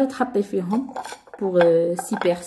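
Dishes clinking and knocking together as they are handled, several sharp clinks, with a woman's voice talking over them.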